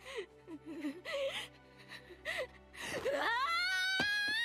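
Anime episode soundtrack: characters' dialogue over soft background music, then about three seconds in a single voice rising sharply into a long, high cry of surprise.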